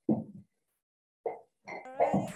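Short clipped fragments of a voice coming through an online-call connection, cut apart by dead silence. There is a brief burst near the start, another about a second in, and a voiced sound just before the end as the reply begins.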